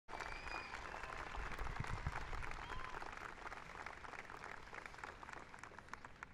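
Audience applauding, many hands clapping together, the applause slowly dying away.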